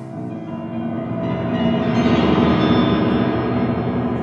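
Grand piano sounding a dense, sustained, metallic-ringing mass of many held tones with a rapid flutter, swelling over the first couple of seconds and then holding.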